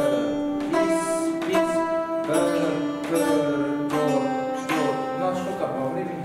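Khakas chatkhan, a plucked zither with movable bridges, played one plucked note at a time. A new note comes about every three-quarters of a second, and each rings on under the next.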